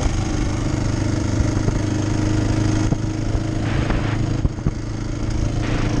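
Motorcycle engine running at a steady, low road speed, heard from on the bike as it rolls along a gravel lane.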